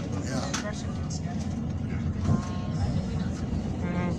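Amtrak Talgo passenger train running on the rails, a steady low rumble heard from inside the coach, with faint voices in the car.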